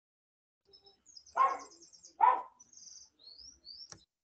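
A small bird chirping, with rapid high-pitched trills about a second in and a few short rising whistle notes near the end. Two short louder sounds come in the middle.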